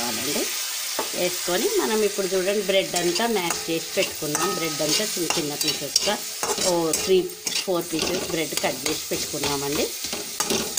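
A spatula stirring and scraping bread pieces around a steel kadai over a sizzle of frying, the scrapes rasping in rising and falling squeaky tones with a steady back-and-forth rhythm.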